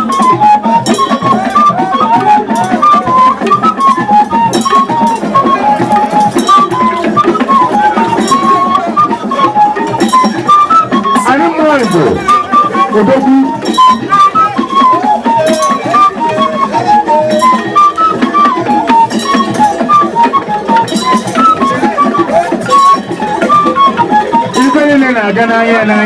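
Traditional music: a high melody of short, hopping notes over a dense, fast rattle and drum rhythm, with voices calling out now and then.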